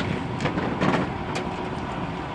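Charter coach bus idling steadily, with a few short knocks and rustles from duffel bags being handled and loaded into its open luggage bay.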